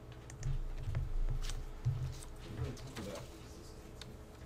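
Quiet classroom with a few scattered clicks from a computer keyboard and mouse, over low muffled bumps and a brief faint murmur about three seconds in.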